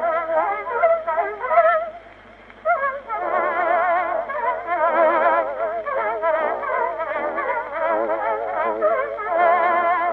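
Instrumental introduction to a zarzuela duet, melody lines played with strong vibrato, with a brief break about two seconds in. It has the narrow, muffled sound of an acoustic phonograph cylinder recording from 1912.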